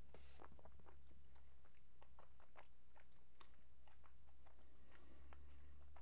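Faint wet mouth clicks and smacks, irregular and scattered, as a sip of whisky is worked around the mouth while tasting, with a short rush of air just after the start. A steady low hum runs underneath.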